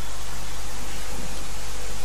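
Steady hiss with a low hum underneath, even throughout with no distinct events: the background noise of a lecture recording.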